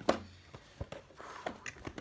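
Small cardboard fishing-reel box being handled and opened: a sharp knock just at the start, then a dull thump and a few light taps and clicks of the cardboard.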